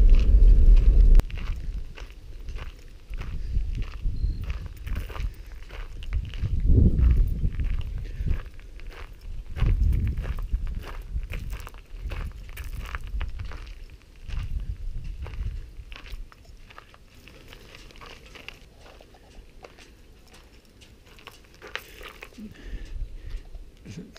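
Footsteps crunching on gravel, a rapid irregular run of crisp crunches that grows fainter in the second half, with occasional low rumbles. For about the first second a car's low engine rumble sounds, then cuts off.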